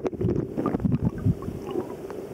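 River current heard through an underwater camera: a steady, muffled rush with scattered small clicks and pops.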